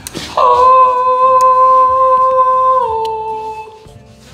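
A person sings one long held note, starting just after the beginning. The pitch steps down slightly near the end before the note fades.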